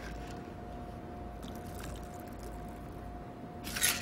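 Faint, even trickle of a shaken gin cocktail being strained from a metal shaker tin into a glass, with a steady low hum beneath it.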